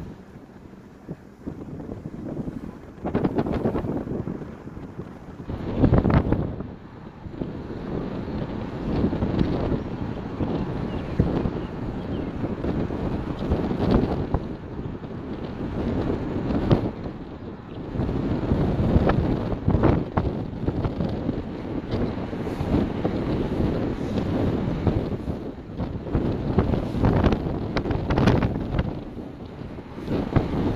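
Wind buffeting the microphone: a low, rough rumble that swells and drops in irregular gusts, loudest about six seconds in and again near twenty seconds.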